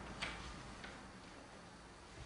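Two faint, sharp clicks over low room hum.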